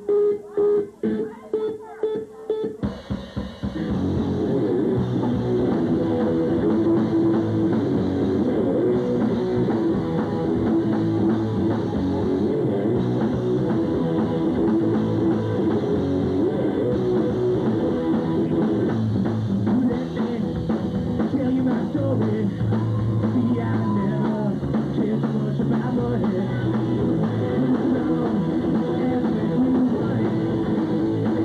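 Live rock band with electric guitar, bass and drum kit starting a song: a few short choppy stabs of sound, then the full band comes in about three seconds in and plays on loudly and steadily.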